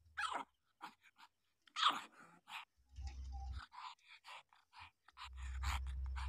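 Week-old puppies squeaking and whimpering in a string of short, high cries, a couple of them falling in pitch. A low rumble comes in twice, about three seconds in and near the end.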